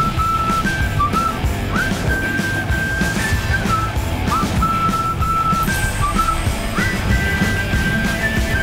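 TV show opening theme music: a steady beat under a high whistled tune of long held notes, each entered with a quick upward slide.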